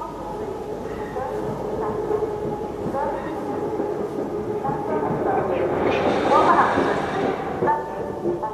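Railway station ambience: a train running amid indistinct voices, rising to its loudest about six seconds in.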